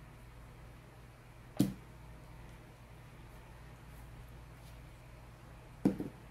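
Two short, sharp knocks about four seconds apart, the second near the end, over a faint, steady low hum of room tone.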